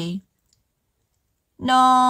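Speech only: a voice speaking in Hmong breaks off just after the start and leaves a dead-silent gap. About a second and a half in, the voice comes back on a long held note in a chant-like delivery.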